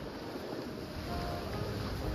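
Steady noise of wind on the microphone over the wash of the sea against the rocks.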